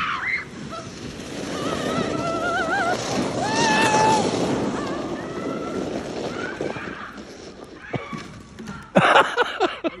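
A person's voice in long, wavering, high cries over a rushing noise, then loud bursts of laughter near the end.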